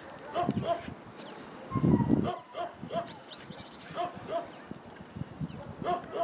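A dog barking in short, repeated yaps, the loudest about two seconds in.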